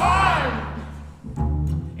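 A sudden loud shouted cry that falls in pitch, the band's 'smäll' for a dynamite blast, over an upright double bass playing two long low notes, the second about a second and a half in.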